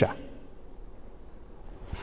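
A pause in a man's speech: quiet room tone with a steady low hum, bracketed by the tail of a word at the very start and a brief mouth sound near the end as speech resumes.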